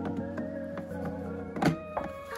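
Background music, with one sharp thunk about one and a half seconds in: the portafilter knocking into the group head of a Sage Bambino Plus espresso machine as it is fitted.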